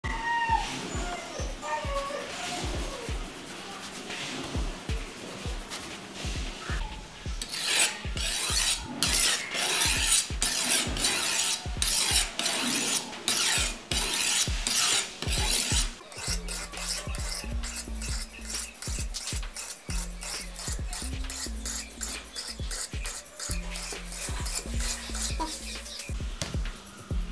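A knife blade being sharpened in quick, repeated rasping strokes, about two a second and strongest through the middle of the stretch. Background music with a steady beat and a bass line runs underneath.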